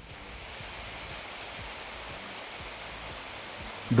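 Spring water cascading down over rocks: a steady rushing that sets in suddenly and holds level.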